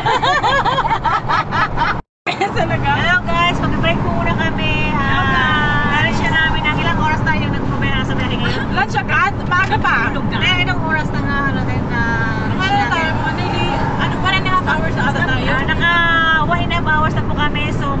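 Several women talking over one another and laughing inside a moving car, over the car's steady low road and engine rumble. The audio drops out completely for a moment about two seconds in.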